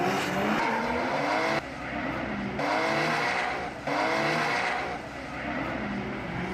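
Drift car engine revving up and down with tyres squealing and skidding, in several short clips cut together that change abruptly every second or so.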